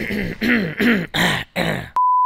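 A man clearing his throat in a string of about five short voiced grunts. A steady test-tone beep cuts in right at the end.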